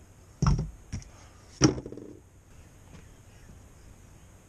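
Handling knocks: a dull thump, a small click, then a sharper knock that rings briefly with a low tone, as objects are picked up and set down.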